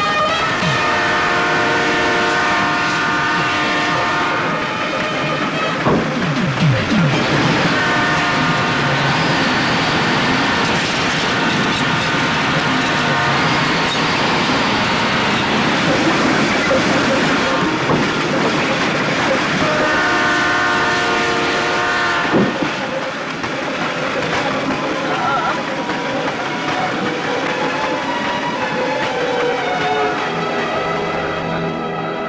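A train running past with a steady rumble and clatter. Its multi-tone horn sounds three long blasts: one just after the start, one from about eight to thirteen seconds in, and one about twenty seconds in.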